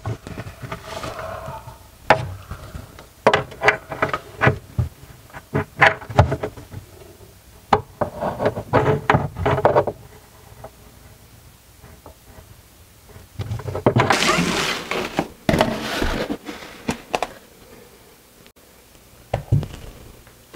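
Basin wrench knocking and clicking against a soap dispenser's mounting nut under a sink as the nut is tightened: a run of sharp knocks, then a few seconds of scraping noise.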